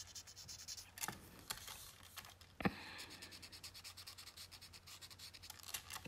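Faint scratchy rubbing of a paper tortillon (blending stump) smoothing graphite shading on a paper tile, in quick short strokes at first, with a few light taps, the sharpest a little under three seconds in.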